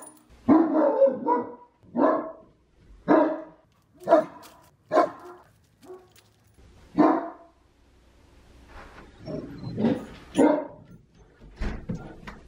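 Great Dane barking loudly: single barks about once a second, a short gap after about seven seconds, then a quicker run of barks near the end.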